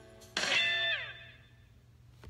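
A single guitar chord struck about half a second in, its pitch sliding down as it dies away: the closing note of the song.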